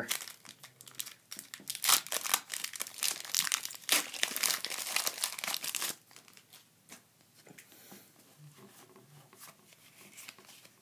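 Foil wrapper of a Pokémon trading card booster pack being torn open and crinkled, busy crackling for about six seconds, then only faint rustle of the cards being handled.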